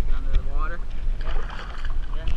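Water splashing and sloshing as a hand works in the water beside a canoe, with a short voice early on.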